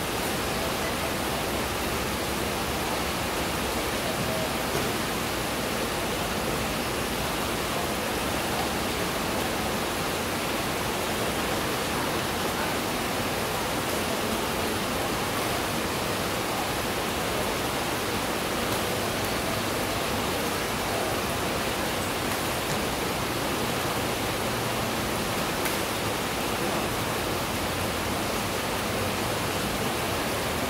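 A steady, even rushing noise that does not change.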